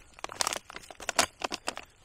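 Plastic-foil ration food pouch crinkling and crackling as it is handled: a quick, irregular run of sharp crackles.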